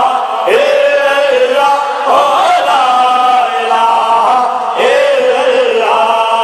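Male voices chanting a devotional refrain together in long held notes, each new phrase opening with a rising swoop.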